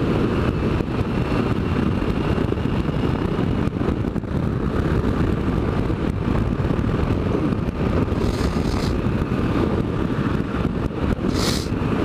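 Motorcycle riding at a steady road speed: wind rushing over the camera microphone over the engine and road noise, a dense low rumble. Two short hisses come about eight and eleven seconds in.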